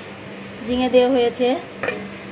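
Steel kitchenware being handled, with a sharp metallic clink near the end. A woman's voice speaks briefly in the middle.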